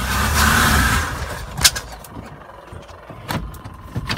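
The 1978 Ford van's 460 V8 running, then dying away about a second in, followed by two sharp clicks inside the cab. The engine has stalled, and the driver wonders whether the motor has locked up.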